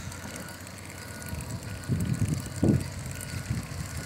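Wind rumbling on the microphone while riding a bicycle along a road, with a few stronger gusts about halfway through.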